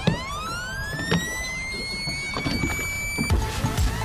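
Minn Kota electric trolling motor whining, rising in pitch as it speeds up and then holding a steady high whine, which cuts off suddenly about three seconds in.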